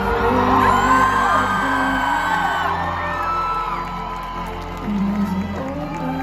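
Live band playing an instrumental passage of held chords over a sustained low bass in an arena, with audience members whooping and cheering over the music.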